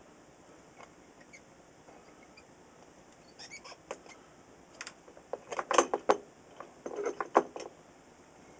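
Small clicks and scratchy scrapes of a circuit board and its parts being handled, with a few scattered ones at first and a dense run past the middle and again near the end, as an old radio's tuning capacitor is worked free of the board during desoldering.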